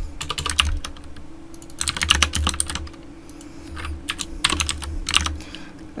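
Typing on a computer keyboard, three short bursts of rapid key clicks with brief pauses between them.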